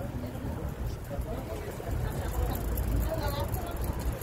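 Busy city street ambience: a steady low rumble of traffic, with the chatter of passers-by nearby.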